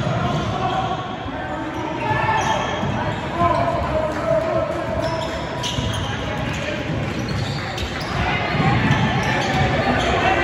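A basketball bouncing on a hardwood gym floor during play, mixed with the voices of players and spectators, echoing in a large gym.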